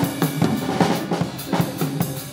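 Acoustic drum kit played with sticks: a quick, busy run of snare, tom and bass drum strikes, several hits a second.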